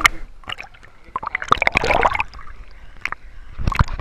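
Pool water sloshing and splashing against a camera held at the water's surface, with a louder burst of splashing about one and a half seconds in and more near the end.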